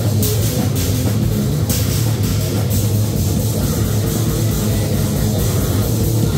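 A powerviolence band playing live and loud: distorted electric guitar and a drum kit, with cymbal crashes coming again and again.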